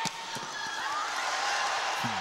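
Crowd noise filling a sports arena during a volleyball rally, with a sharp hit of the ball right at the start and a few lighter knocks just after.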